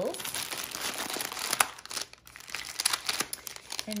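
Clear plastic wrapping crinkling and rustling as it is handled, dense for about the first two seconds and then thinning to scattered crackles.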